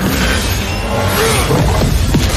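Loud layered battle sound effects for an animated blast: a deep rumble with shattering and crashing debris, starting suddenly, mixed with dramatic score.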